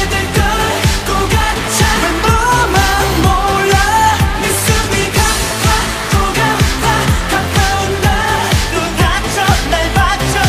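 K-pop dance-pop song performed live, with male vocals over a steady drum beat and synth backing.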